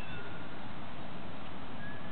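Birds calling in short, high whistles, once at the start and once near the end, over a steady rushing background noise.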